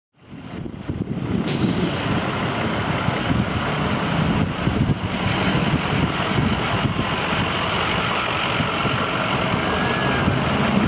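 Steady low rumble of idling heavy-truck engines, with a constant hiss over it.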